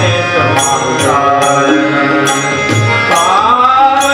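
A man singing a devotional song into a microphone, his voice sliding between notes over a steady drone, with regular tabla strokes about every two-thirds of a second.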